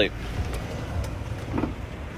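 A car door being opened from inside and someone getting out, with a few light clicks over a low steady rumble. A short bit of a voice comes about one and a half seconds in.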